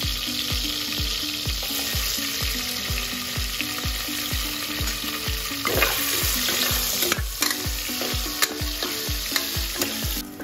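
Sliced onion and whole spices sizzling in hot oil in an aluminium pressure cooker, stirred with a metal spoon, with a few sharp clicks in the second half. A steady low beat, about three a second, runs underneath.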